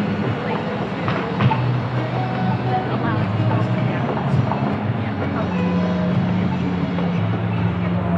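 Busy street ambience: cars passing through an intersection, with people's voices around.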